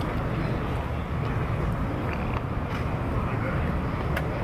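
Steady outdoor ballpark background noise, a low rumble with faint, indistinct distant voices.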